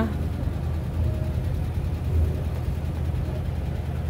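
Low, steady background rumble with a faint haze of noise above it.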